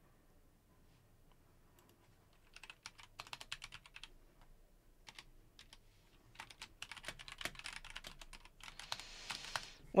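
Typing on a computer keyboard: bursts of quick keystrokes start a couple of seconds in and keep coming, with a brief soft rush of noise near the end.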